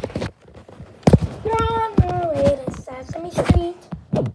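A voice in drawn-out, sing-song tones, with a few sharp knocks of plastic toys being handled.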